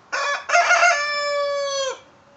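A rooster crowing once, loudly: a short opening syllable, then a long held note whose pitch drops just as it cuts off near the end.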